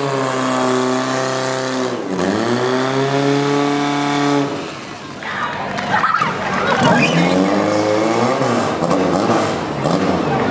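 Portable fire-pump engine running hard under load, its pitch dipping sharply about two seconds in and recovering, then dropping near the middle and revving unevenly after that. Spectators shout over it.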